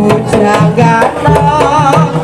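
Kuda kepang (kuda lumping) accompaniment music: hand drums beating a driving rhythm under a wavering high melody line, played loud.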